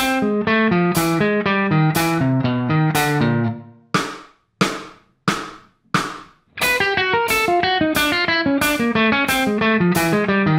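Electric guitar playing a steady stream of alternate-picked single notes in a chromatic picking drill, the line working down in pitch. It stops about three and a half seconds in. Four evenly spaced clicks follow, and the drill starts again about six and a half seconds in.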